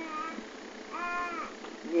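A baby vocalising: two drawn-out, cooing cries, the second about a second in, each rising and then falling in pitch.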